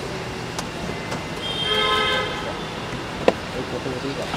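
Street noise with a car horn sounding once for about a second near the middle, and a few sharp clicks, the loudest about three seconds in.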